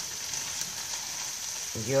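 Chopped red onion and sliced garlic sizzling steadily in olive oil in a frying pan while a spoon stirs them; the onion is being gently softened (pochado).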